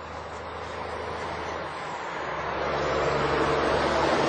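A big truck driving by on the road: a steady rush of engine and tyre noise that grows gradually louder as it approaches.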